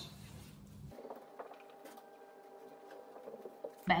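Faint handling noises, a few soft knocks and rustles, as a pair of running shoes is picked up, over a faint steady hum.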